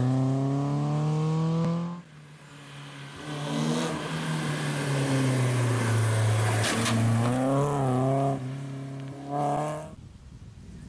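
BMW E30 rally car's engine revving hard under acceleration, its pitch climbing, then breaking off suddenly. A rally car's engine then builds again through a tight bend, revs rising and falling, with a single sharp crack near the middle and quick up-and-down throttle blips toward the end.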